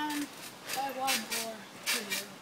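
A child's voice making short wordless vocal sounds, with a few brief knocks in between.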